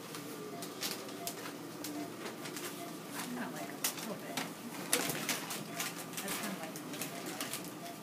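Paper surgical drapes and plastic drape material crinkling and rustling in many short crackles as gloved hands handle them, with faint voices murmuring in the room.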